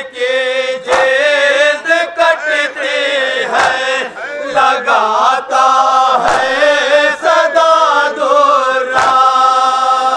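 Group of men chanting an Urdu noha (Shia lament) together into a microphone, in long held, wavering notes. A few sharp slaps of matam, hands striking chests, cut in at irregular intervals.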